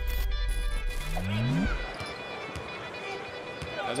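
Intro music sting with a deep bass rumble and a short rising swoosh, cutting off about halfway through. After it comes the quieter crowd noise of a basketball arena broadcast.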